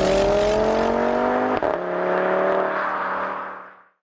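A logo sound effect built on a car engine revving: a rising engine note, a sharp hit about one and a half seconds in, then a steady tone that fades out near the end.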